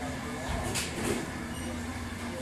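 Coffee shop ambience: a steady bed of indistinct chatter from many people, with two short bursts of noise about halfway through.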